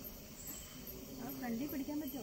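Crickets chirping, a high regular chirp repeating two or three times a second.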